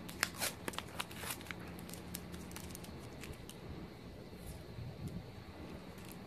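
A sticker being picked at and peeled off the metal stem of a Bird electric scooter: a quick run of small crackling, tearing clicks in the first couple of seconds, then a few scattered ones.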